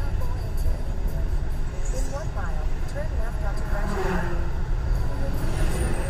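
Steady low road and engine rumble inside a moving car's cabin, with an indistinct voice coming faintly over it around two and four seconds in.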